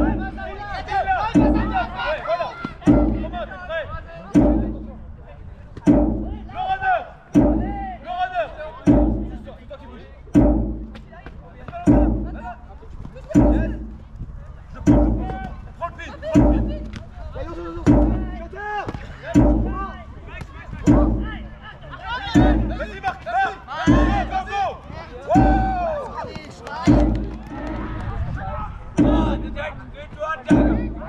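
Jugger timekeeping drum struck at an even pace, one beat every second and a half, counting the stones of play, with players shouting across the field between the beats.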